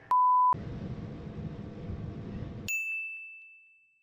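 A short, steady electronic beep, then a couple of seconds later a bright bell-like ding that rings and fades: edited-in sound effects.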